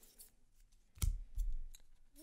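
Magic: The Gathering cards being flipped through by hand: soft card slides with a sharp click about a second in, then a few light ticks.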